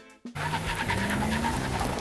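A vehicle engine accelerating, its pitch rising slowly under a loud rushing noise. It starts abruptly a moment in.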